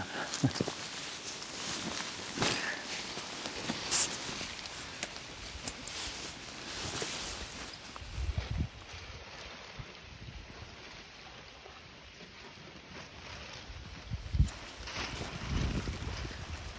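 Rustling and light knocks of a rucksack and gear being handled, over outdoor ambience with low gusts of wind on the microphone about halfway through and again near the end.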